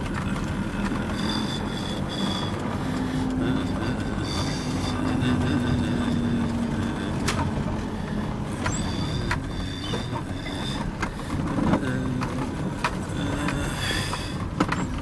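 Cabin noise of a car being driven: a steady low rumble of engine and tyres with a faint engine hum that drifts slightly in pitch. Scattered light clicks and short, faint high tones come and go over it.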